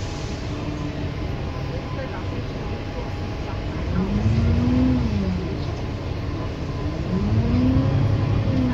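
Alexander Dennis Enviro400 MMC double-decker bus heard from inside on the upper deck, its engine and road noise droning steadily. The engine note rises and then falls twice, once about four seconds in and again near the end, as the bus picks up speed.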